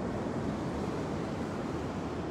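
Steady rush of ocean surf on a beach, mixed with wind noise on the microphone.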